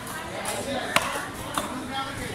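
Long-bladed fish knife cutting yellowfin tuna on a wooden chopping block. A sharp knock of the blade striking the block comes about a second in, with a lighter knock just after.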